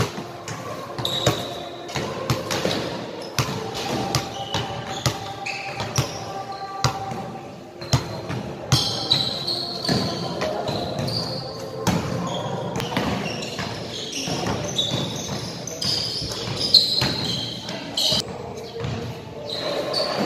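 Basketballs bouncing on a hard indoor court: many irregular thuds from players dribbling.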